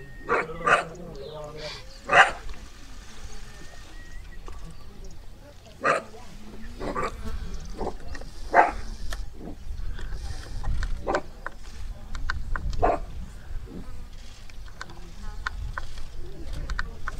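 Young cheetah cubs snarling and hissing at a kill: a string of short, sharp calls every few seconds.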